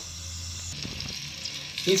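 Sliced onions dropped into hot oil in a clay cooking pot, starting to sizzle a little under a second in.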